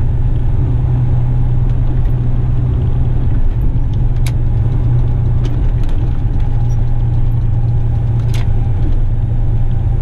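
Western Star truck's diesel engine running steadily inside the cab while driving, a loud, deep, even drone. A few sharp clicks cut through it, the clearest about four and eight seconds in.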